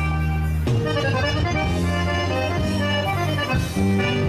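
Accordion playing instrumental dance music: held chords over a steady bass line, with the notes changing every second or so.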